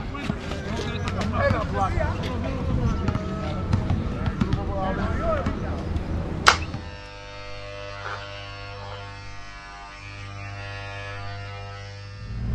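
Men's voices calling out over a basketball being dribbled on an outdoor concrete court, with short bounce knocks. About six and a half seconds in, a sharp click, then a quieter steady buzzing drone.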